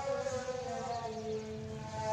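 Young Nili-Ravi water buffalo calling: one long, drawn-out call that slides slowly down in pitch and fades about a second and a half in.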